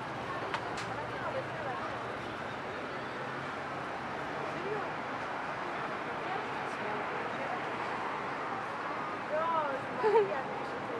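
Street background noise with a steady murmur of distant voices from people nearby, and one voice briefly louder near the end.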